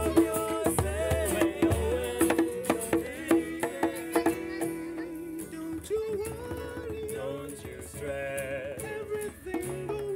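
Live acoustic song: a steel-string acoustic guitar strummed under a man's singing, with a drum keeping a steady beat. About four seconds in the drum drops out and the music goes quieter, leaving guitar and voice.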